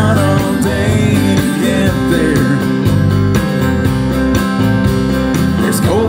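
Live country band playing an instrumental stretch between vocal lines, guitar to the fore over bass and a steady drum beat.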